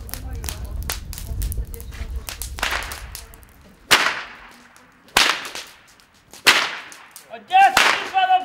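Four sharp whip cracks about a second and a quarter apart, each trailing off, the first one after a rising swish of the lash. A low rumble fills the first few seconds before them.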